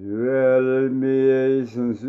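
A man's voice singing a long, low held note on a vowel, almost level in pitch, with a short break near the end as the next note begins.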